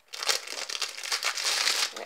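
Crinkling plastic packaging being handled, with a dense crackle that starts just after the beginning and goes on throughout, around a new pencil case that is still unopened.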